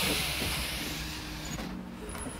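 Street traffic noise: a passing vehicle's hiss fading away over about a second and a half, over a faint low hum.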